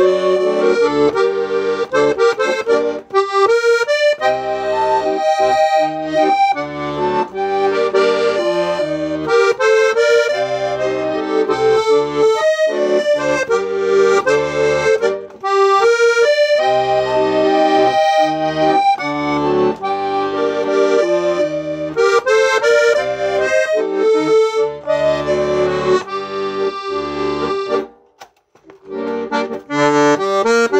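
Royal Standard three-voice chromatic button accordion (a German-made bayan, overhauled and tuned) playing a tune, several notes sounding together. The playing breaks off briefly about two seconds before the end, then starts again.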